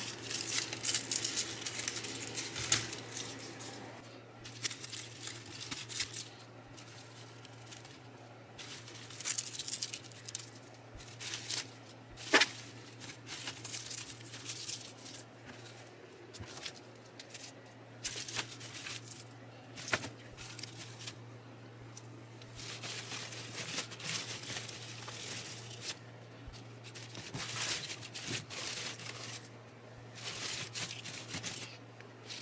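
Irregular rustling and tearing of pothos leaves and stems as yellowed leaves are plucked off potted plants, with a couple of sharp snaps. A steady low hum runs underneath.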